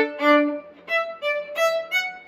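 Solo fiddle played with the bow in a run of short, separate notes, the melody stepping up to higher notes about a second in.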